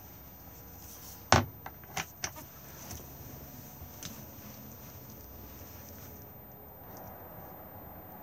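A caravan's hinged wooden under-seat locker lid and panel being closed: one sharp knock about a second in, then a few lighter clicks and taps, over a faint steady background hum.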